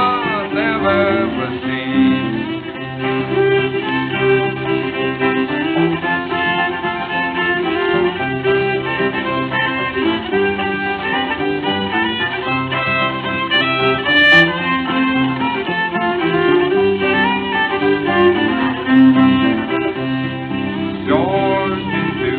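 Old-time string band instrumental break between verses: a fiddle carries the melody over plucked banjo and guitar accompaniment, with no singing.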